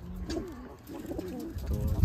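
Domestic pigeons cooing: several short, low coos.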